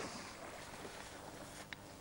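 Faint water noise of a Hungarian vizsla swimming across a pond, fading over the stretch, with one tiny click near the end.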